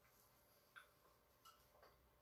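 Near silence: room tone with three faint short clicks, the first about a second in and two close together near the end.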